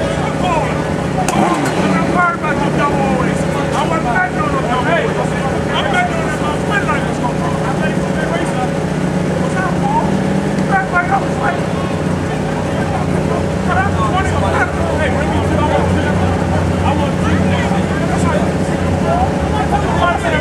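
Drag-racing motorcycle engines idling steadily at the starting line, a low note that deepens a little past the middle, with people talking over it.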